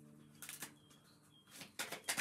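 Oracle cards being shuffled by hand, with quick papery flutters about half a second in and again near the end.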